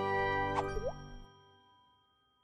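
Closing notes of a short channel-logo jingle: a held chord fading out, with two quick pitch-gliding blips a little over half a second in, one falling and one rising. The music dies away to silence by about a second and a half in.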